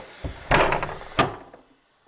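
A large door bolt being worked open: a loud scraping rasp about half a second in, then a sharp clack just over a second in.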